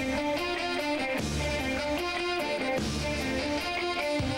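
Rock band playing live, strummed electric guitar to the fore over bass and drums, in the instrumental opening of a song.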